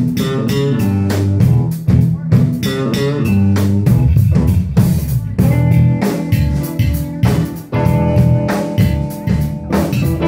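A band playing a blues-style tune: guitar and bass guitar over a drum kit keeping a steady beat.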